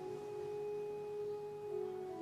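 Church organ music: a chord held steadily, moving to a new chord near the end.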